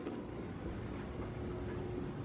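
Moving walkway in an airport terminal running with a steady low rumble and hum, and a faint steady high tone over it.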